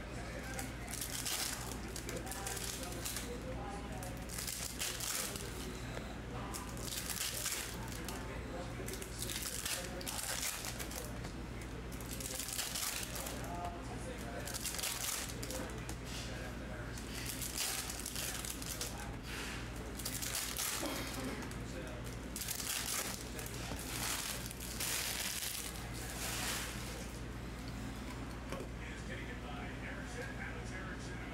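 Foil trading-card pack wrappers crinkling and cards being handled and shuffled into stacks, in irregular bursts of rustling, over a steady low hum.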